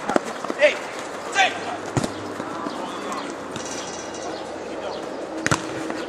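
Futsal match play: players' short shouts about half a second and a second and a half in, and sharp thumps of the ball being kicked, the last one near the end as a shot is struck at goal, over a steady background hiss.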